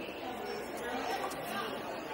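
Indistinct background chatter of several people's voices, steady and overlapping, with no single voice standing out.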